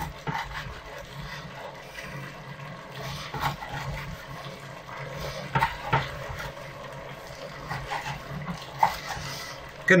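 Kitchen knife slicing through a roasted duck breast, with a few sharp knocks as the blade meets a plastic cutting board, over a steady low background hum.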